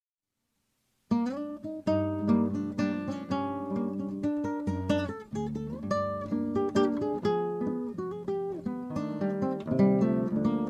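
Acoustic guitar music: a quick run of plucked notes and strums, starting about a second in after silence.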